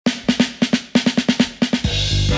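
Drum fill opening a piece of background music: a quick, uneven run of about a dozen snare and tom strikes, roughly six or seven a second, leading into the band.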